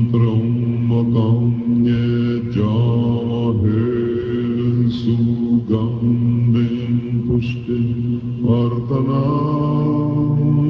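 A small group of men chanting Tibetan Buddhist prayers in unison, in low voices held on a steady drone that shifts pitch a few times, taken from a hand-held tape recording.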